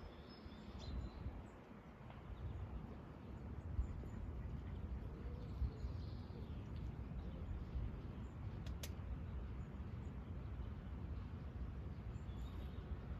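Quiet outdoor ambience: a low, steady rumble with faint bird chirps, and a single sharp click about three-quarters of the way through.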